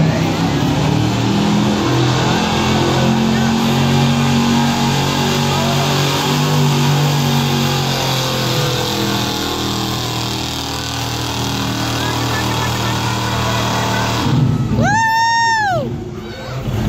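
1993 GMC pickup's engine pulling a weight sled under load, held at steady high revs for about eight seconds and then easing off. Near the end a loud high whoop or whistle rises and falls once.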